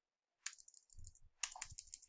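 Faint clicking of computer keyboard keys being typed, a quick run of light clicks starting about half a second in.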